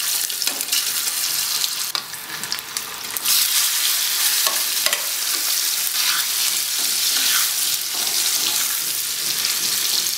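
Boiled amla (Indian gooseberry) pieces sizzling as they go into hot oil with spluttered mustard seeds and turmeric, stirred with a steel ladle. The sizzle grows louder about three seconds in and stays steady.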